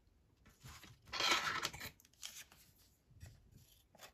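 Paper being handled and cut with small craft scissors: a longer paper rustle about a second in, the loudest sound, then a few short, fainter snips and rustles.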